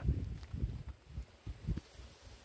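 A few faint, dull, irregular thumps and handling noise as a styrofoam box is gripped and lowered into a tub of liquid.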